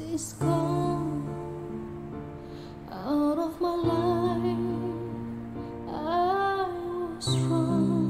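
A woman singing a slow ballad over sustained backing chords, her voice wavering with vibrato on long held notes about three seconds in and again about six seconds in.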